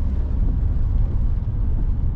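Steady low rumble of a manual car's engine and tyres heard from inside the cabin as it pulls away down a hill.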